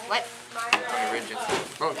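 Background talk of several students' voices, with two sharp knocks on the table in the first second.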